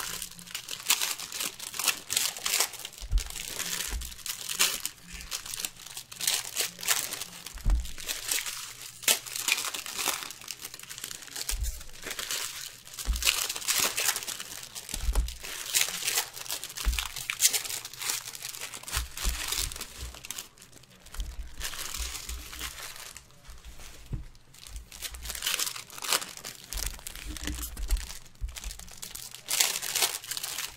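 Foil trading-card pack wrappers crinkling and tearing as packs are ripped open and handled, a busy, ragged rustle that runs on without pause. Occasional low thumps come through under the rustle.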